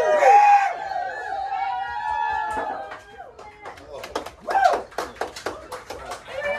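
Several people's voices overlapping in a small, crowded bar room, loudest in the first second. A run of sharp short knocks follows near the end.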